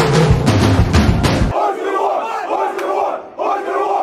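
Drum-heavy music with sharp beats that cuts off about a second and a half in, followed by a huddled group of young men shouting a rhythmic chant together in unison.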